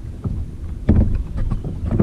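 Personal watercraft running across choppy water: a steady low rumble with wind on the microphone, and the hull slapping hard on a wave about a second in and again near the end.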